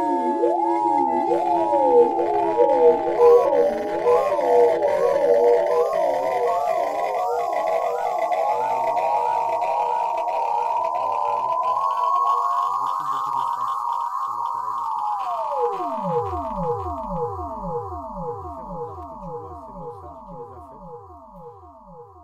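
Music of many overlapping wavering, gliding tones that build up and settle toward a held high tone, then break into a run of repeated steep downward pitch sweeps, about two a second, fading out toward the end.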